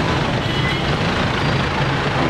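Steady road traffic noise on a city street, with a low engine hum from passing vehicles and indistinct voices mixed in.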